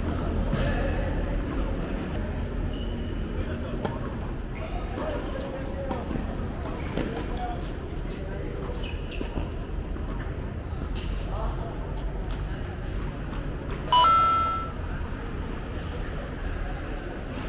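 Doubles tennis rally on a hard court: occasional racket strikes on the ball and players' and onlookers' voices over a steady hum. About 14 s in, a single loud bright chime rings and dies away in under a second, as the game ends.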